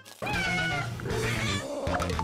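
A Javanese cat gives one long meow, over background guitar music.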